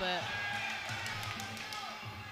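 Crowd murmur and hall ambience at a Muay Thai fight, with a few faint thuds of punches and kicks landing and music running underneath.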